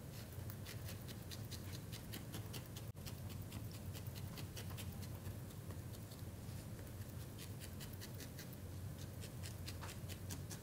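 Barbed felting needle jabbing into coarse, wiry wool: quick, crisp pokes repeating about three times a second.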